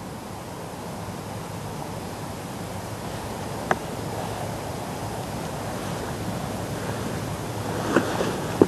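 Wind rushing steadily over the microphone, growing slightly louder, with a single sharp click a little before the middle.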